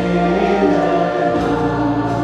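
Music: a choir singing, with long held notes.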